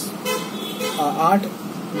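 A man speaking, with a steady low hum in the room behind his voice.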